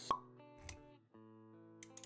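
Sound effects of an animated intro over background music: a sharp pop with a short pitched blip just after the start, then a soft low thud around the middle, with a few light clicks near the end, all over steady sustained music notes.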